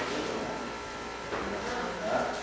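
Faint handling noise of rubber-jacketed MIG welding cables being coiled and hung on the welding machine, with a brief rustle and knock a little over a second in, over a faint steady hum.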